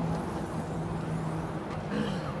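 Steady low hum of road traffic, with a vehicle engine droning for about a second in the middle.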